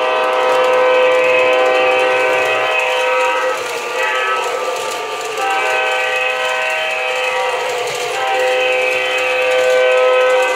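Model diesel locomotive's electronic sound system playing an air horn in long held blasts that swell and dip, weaker for a moment about four seconds in, as the O gauge train runs past.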